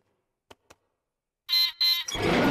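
Two short electronic buzzes, each about a quarter of a second, near the end: the cartoon sound of a robot dinosaur switching on once its floor spot is stepped on.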